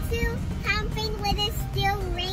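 A young child singing in a high voice, a few short held notes with breaks between them, over the low steady rumble of a car's interior.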